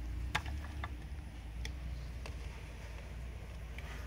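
A sharp click about a third of a second in, then a few fainter clicks and knocks as small metal screws, a screwdriver and the plastic blower housing are handled, over a steady low rumble.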